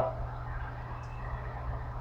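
Steady low hum with faint hiss, and no distinct event: the background noise of a home recording.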